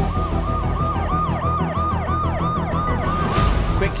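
Emergency-vehicle siren in a fast yelp, its pitch rising and falling about three times a second over a low rumble, stopping shortly before the end.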